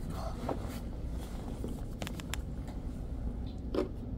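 A few light clicks and a knock as items on a hospital meal tray are handled, over a steady low hum of room noise.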